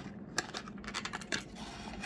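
Clear plastic blister clamshell being pried open to free a small die-cast model car: several sharp plastic clicks over a light crinkling rustle.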